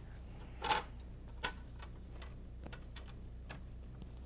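Light clicks and knocks of a SeeMeCNC heated bed being turned and settled by hand on a Rostock Max v3.2 delta printer's base: a louder knock under a second in, a sharp click at about one and a half seconds and a faint one near the end, over a steady low hum.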